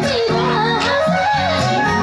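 A woman singing live into a microphone over band accompaniment, her voice carrying a wavering, ornamented melody.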